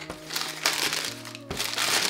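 Tissue paper crinkling in a run of short rustles as it is pulled back from a pair of sneakers in a cardboard shoebox, over soft background music.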